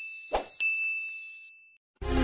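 Sound effects for an animated subscribe/share button: a high ding is still ringing at the start. About a third of a second in comes a short tap, then a fresh bell-like ding that holds for about a second and stops.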